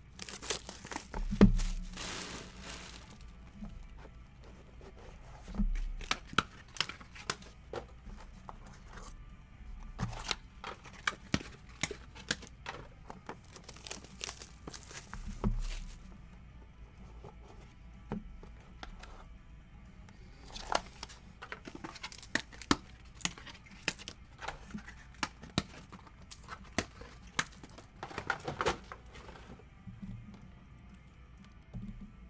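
Plastic shrink-wrap being torn and crumpled off sealed trading-card boxes, with cardboard boxes handled, tapped and set down on a tabletop in irregular knocks and clicks, one loud knock about a second and a half in.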